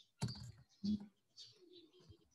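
A few soft computer-keyboard keystrokes: the backspace key pressed several times.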